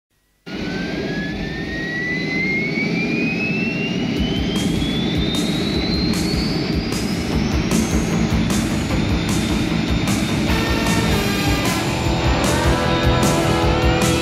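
Jet engine spooling up, a rumble under a whine that rises steadily in pitch for about eight seconds. A drum beat comes in partway through, and music builds over it near the end.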